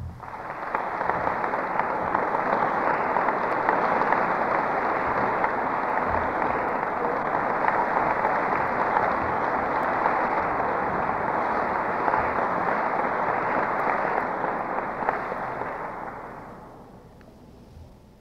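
Audience applause from many hands, starting at once, holding steady, then dying away near the end.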